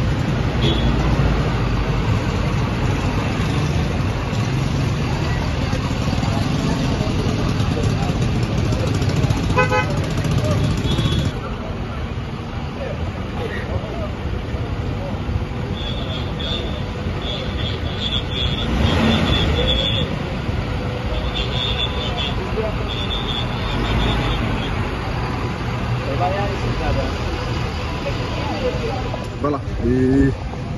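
Armoured vehicles' engines running with a steady low rumble, a short horn toot about ten seconds in, and a run of short high-pitched beeps from about 16 to 24 seconds, with voices in the background.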